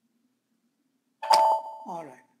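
A computer notification chime about a second in: one sudden ringing tone that fades away, sounding as the SAP GUI status bar confirms that the background job was scheduled. A short bit of voice begins near the end.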